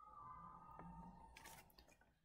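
Near silence, with a faint steady high tone that fades out about one and a half seconds in, followed by a few faint clicks.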